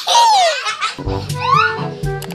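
A young child squealing with laughter: a loud, high cry that falls in pitch, then a second, shorter rising squeal. Music with a steady beat comes in about halfway.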